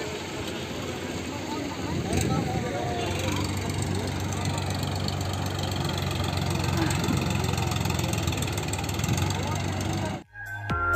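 Tractor engine running steadily at low revs, coming in about three seconds in, over a steady noise of flowing floodwater, with people's voices in the background.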